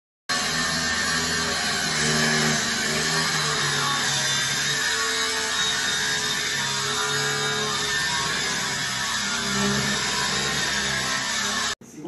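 Angle grinder cutting into metal, a loud steady grinding noise that starts suddenly and cuts off abruptly just before the end.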